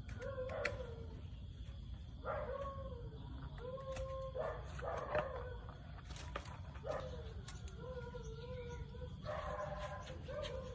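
Repeated drawn-out whining calls from an animal, about one every one to two seconds, each starting sharply and sliding down to a steady pitch.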